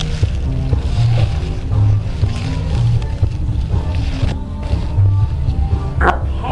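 Background music with a prominent bass line of low notes that shift in pitch about every half second, under held mid-range tones.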